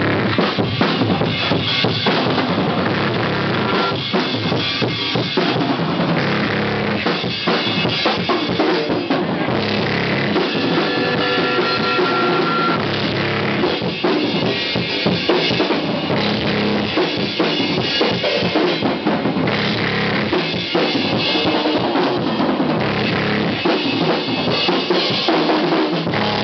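A hardcore band with two drummers playing live and loud, drums to the fore: kick drum, snare and cymbal strikes without a break. A short held tone rises above the drums about ten seconds in.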